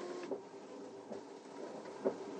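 Car's rear window washer being worked, a faint, steady mechanical whir of its small electric pump and wiper motor.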